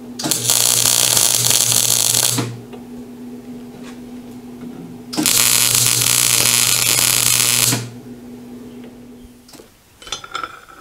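Stick welding arc crackling on steel in two runs of about two seconds each, starting and stopping abruptly, with a pause between them. A steady electrical hum runs underneath and stops shortly before the end.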